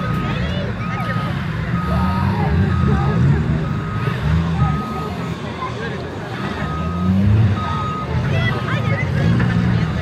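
Several old cars' engines running and revving as they push a giant ball across a grass field, their pitch rising and falling. A reversing alarm beeps steadily over them, about once a second.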